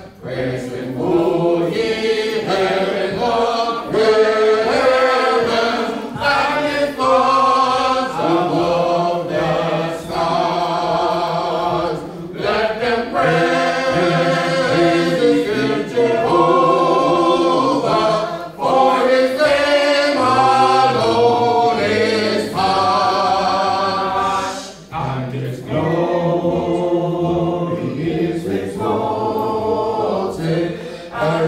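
Voices singing a hymn together a cappella, without instruments, in long held phrases with a short break about every six seconds.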